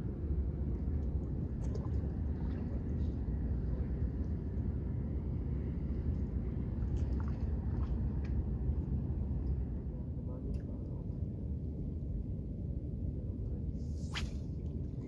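Steady low outdoor rumble with a few faint, scattered clicks and ticks.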